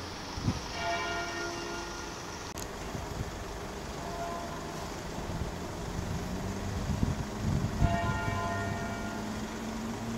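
A church bell struck slowly, about once every three to four seconds, each stroke ringing on and fading away. A low traffic hum runs underneath and grows a little louder in the second half.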